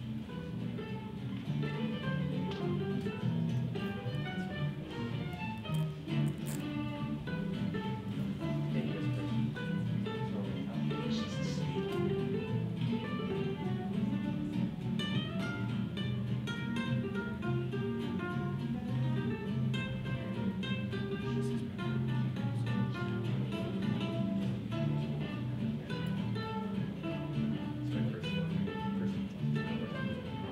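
Guitar music: quick plucked notes over a steady low accompaniment, playing throughout.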